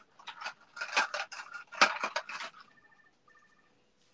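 Clicks and clatter of plastic hair clips being picked through and handled, with a sharp clack a little under two seconds in.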